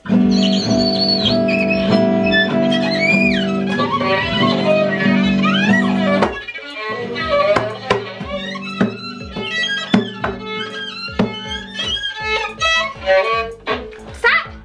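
A violin bowed with sliding notes together with a strummed acoustic guitar. A held, full chord sounds for about six seconds, then it turns choppier, with many short strums and plucks.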